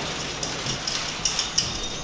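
Eggs and spinach sizzling in butter in a frying pan, a steady hiss, with a few faint scraping strokes of a vegetable peeler on a carrot.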